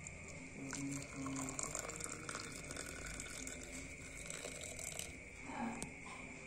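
Water poured from a metal pan into a glass mug of butterfly pea flowers, a splashing, filling pour that picks up about a second in and tails off near the end.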